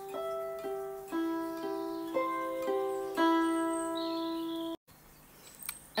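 Hollow-body electric guitar picking a single-note riff: eight notes about half a second apart, 12th-fret notes on the G string alternating with higher notes and the open high E (G E G E G C G E). The last note rings on until the sound cuts off suddenly near the end.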